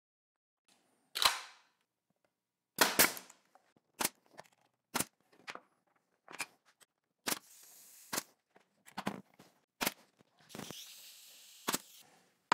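Pneumatic nail gun firing a string of sharp shots, about a dozen spaced roughly a second apart, tacking nails into the glued miter corners of a pine frame, with a short hiss of air after a couple of them.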